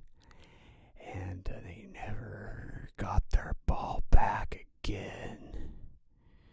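A man's voice whispering and making wordless spooky vocal noises, in several short stretches with pauses between, after a quiet first second.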